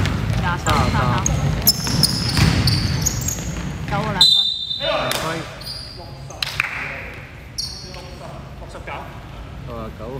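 Basketball game on a hardwood gym floor: sneakers squeaking and the ball bouncing as players run the court, in a large echoing hall. About four seconds in a referee's whistle blows once, and play stops.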